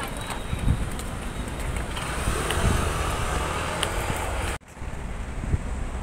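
Outdoor ambience: wind buffeting the microphone over a low rumble, with a few faint clicks. The sound drops out for an instant about three-quarters of the way through, then the same noise carries on.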